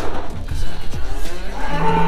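A cow mooing once, a single low steady moo starting near the end, over background music with a beat.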